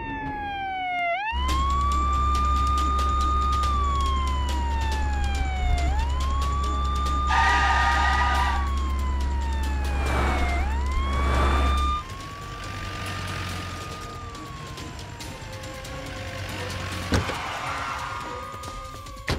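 Police siren wailing: each cycle rises quickly, holds high, then falls slowly, repeating about every four to five seconds. A steady low hum runs under it and stops about two-thirds of the way through.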